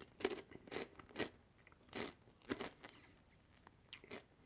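Chewing of dense fried pork rinds heard close to a clip-on microphone: a run of about six crisp, irregular crunches over the first three seconds, then they stop.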